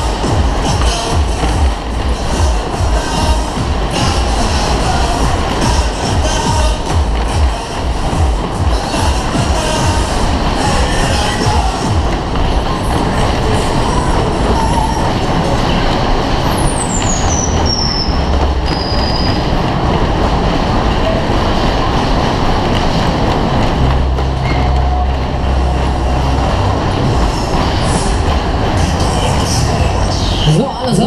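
A Kalbfleisch Berg- und Talbahn running at full speed, recorded from a seat in one of its cars: steady rumbling and clattering of the cars over the undulating track, with the ride's music underneath. A high, falling whistle sounds about halfway through.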